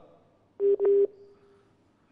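Two short telephone line beeps close together, about half a second in, at one steady pitch: the phone line to the caller has dropped.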